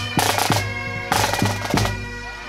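Scottish pipe band playing: bagpipes sounding steady drones and melody over snare drums, with a bass drum beating about twice a second.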